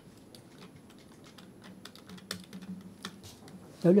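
Sheets of paper being handled close to a lectern microphone: irregular light clicks and crackles, over a faint steady hum. A man's voice starts right at the end.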